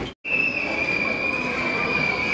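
A steady high-pitched whine, held for about two seconds, over background noise; the sound cuts out completely for a moment just before it starts.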